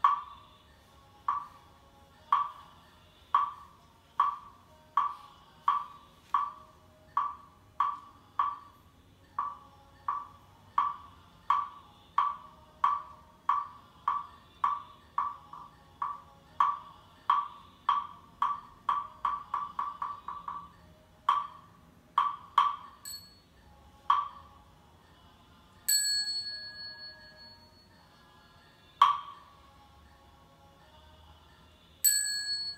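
A Buddhist wooden fish (muyu) struck in a steady beat of a little over one knock a second, quickening into a fast run of strokes about two-thirds through, then a few slower closing knocks. A bell then rings out and sustains for a few seconds, and a last knock sounds near the end.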